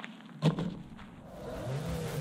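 A single sharp knock about half a second in, then background music coming in and getting louder, with a rising tone near the end.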